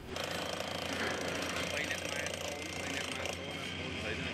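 Machinery at a building-collapse rescue site hammering in a fast, steady rattle, with people talking in the background.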